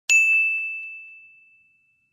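A single high, bell-like ding sound effect, struck once and left to ring, fading out over about a second and a half.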